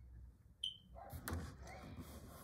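Quiet room, with a brief high-pitched blip about half a second in, then faint handling noise and soft clicks as hands reach over the phone on the wooden desk.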